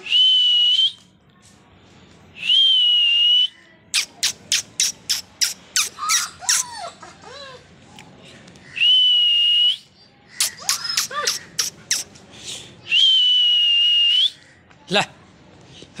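Loud high-pitched whistling: four long, steady whistles of about a second each, alternating with two rapid runs of short, sharp whistle notes at about four a second, some ending in falling glides. A single sharp knock near the end.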